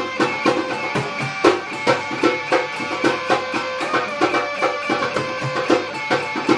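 Instrumental passage of a band's song: plucked-string riff over a steady drum beat.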